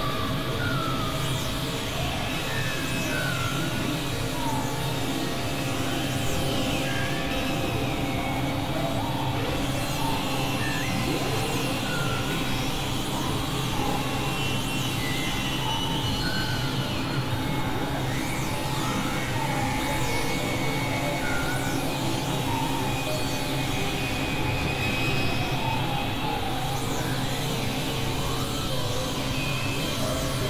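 A dense, steady layered mix of several music and sound tracks playing over one another: sustained electronic drones and held tones with a heavy low hum, and short gliding blips scattered throughout.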